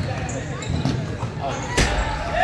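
Basketball game in a gym: players' shoes squeaking, voices and the thud of the ball, then a sharp bang near the end as a shot hits the backboard and rim.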